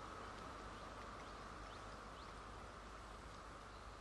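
Quiet room tone: a steady hiss and low hum, with a few faint short high chirps. The fire engine's engine is not running.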